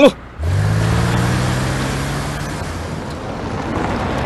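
Car engine pulling away and driving on, a steady low engine note with road noise that starts abruptly about half a second in.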